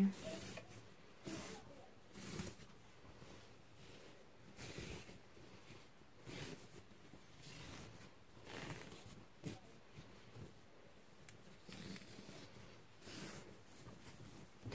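Faint, irregular rustling of a fabric sheet handled in short strokes as hands spread the gathers of its elastic edge evenly.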